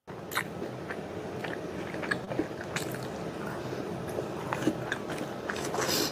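A person chewing a mouthful of food, with many small wet clicks and crunches from the mouth.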